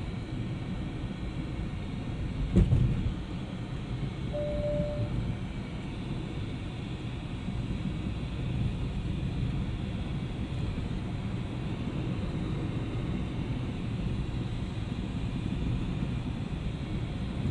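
Steady road and engine rumble heard inside a moving car's cabin, with a single loud thump about two and a half seconds in and a short beep about four and a half seconds in.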